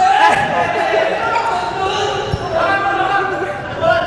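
Dodgeball bouncing and thudding a few times on an indoor court floor, with players' voices calling out in the echoing hall.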